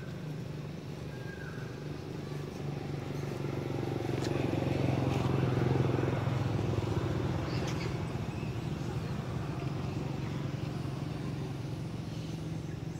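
A motor vehicle's engine passing by: a steady low hum that grows louder to a peak about halfway through, then slowly fades.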